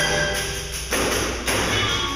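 Percussion ensemble playing: pandeiros struck sharply at the start, about a second in and again half a second later, over ringing mallet-keyboard notes.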